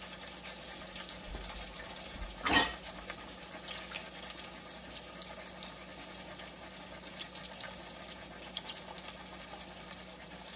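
A pork chop searing in hot oil in a stainless steel pan, sizzling and crackling steadily. A single brief knock, louder than the sizzle, about two and a half seconds in.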